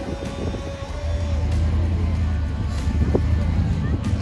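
Engine of a tube-frame rock-crawler buggy running under load as it climbs out of a rocky pit, getting louder about a second in, with background music over it.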